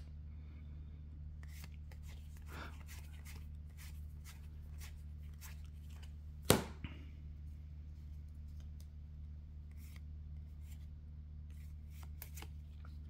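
Trading cards being handled and slid one past another in the hands, faint rustles and small clicks over a steady low hum, with one sharp snap about halfway through.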